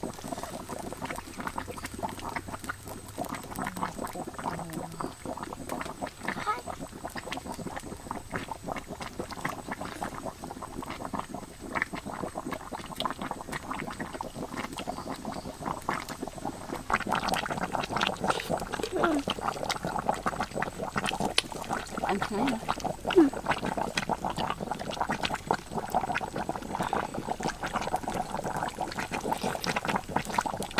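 Boiled eggs being peeled and eaten by hand, with small cracks and clicks throughout. The eating sounds grow denser about halfway through. Underneath, a wok of sauce simmers over a wood fire.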